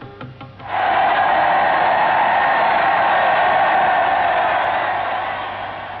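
A large crowd cheering, a steady dense roar that starts about a second in and eases a little near the end.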